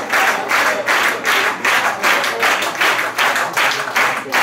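Audience clapping together in a steady rhythm, about two and a half claps a second.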